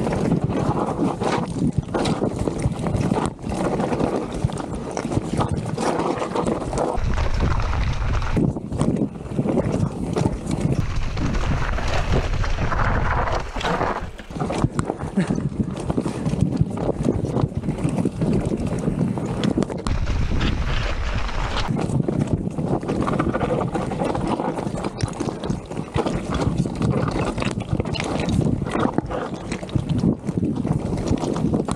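Wind rushing over an action camera's microphone as a Vitus Sommet 29 full-suspension mountain bike descends a rocky trail fast: tyres rolling over loose stones and frequent clattering knocks from the bike on the rocks. A deep wind rumble swells twice, around seven and twenty seconds in.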